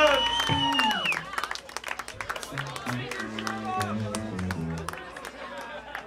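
A live rock band's song ends on a held note that cuts off about a second in. Then comes scattered audience clapping over a few low plucked notes from the band.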